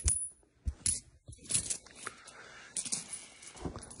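Colombian coins being handled: a short high ring at the start, then a few light metallic clicks.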